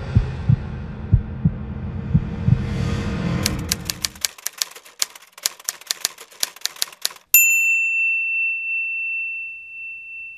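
Intro sound effects: a low rumble with irregular thumps, then rapid typewriter keystrokes for about three seconds as the title types itself out, ending with a typewriter bell ding that rings on.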